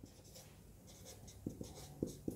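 Marker pen writing on a whiteboard: faint, scratchy strokes that grow a little louder in the second half.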